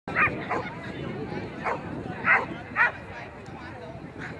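A dog barking in short, high yips, about five of them, the loudest two past the middle, over a background murmur of people talking.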